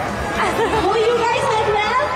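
Voices and crowd chatter echoing in a large hall, with one voice carrying over the rest in long, bending pitched lines.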